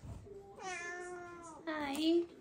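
Domestic cat meowing twice: one long meow, then a shorter one near the end.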